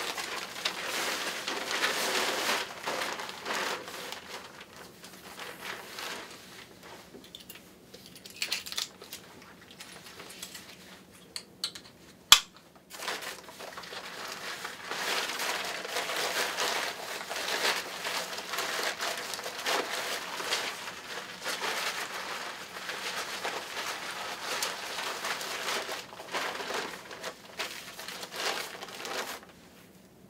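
Crinkly Tychem hood fabric rustling and crackling as the hood is pulled down over the head and adjusted, in spells with a quieter stretch between. A single sharp click about twelve seconds in.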